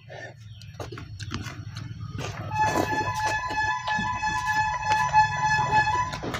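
A vehicle horn sounding one long, steady blast of about three and a half seconds, starting about halfway in, over a low steady engine rumble. Short clicks and smacks of eating by hand run throughout.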